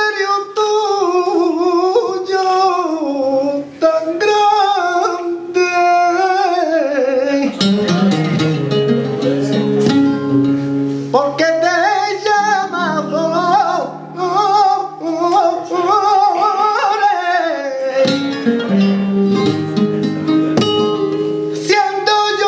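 Male flamenco singer singing a fandango in long, wavering melismatic phrases, accompanied by flamenco guitar. The guitar's chords come forward between vocal lines about eight seconds in and again near the end.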